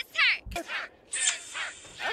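Crows cawing: a run of short, harsh caws, several in a row.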